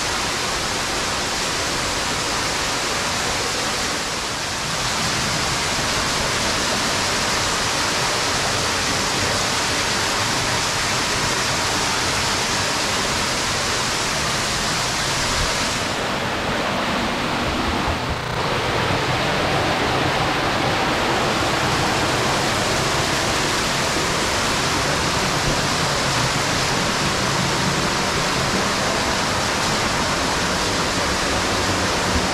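Steady rush of a shallow stream and small waterfall running through a stone-lined tunnel; the hiss dulls a little for a few seconds in the middle.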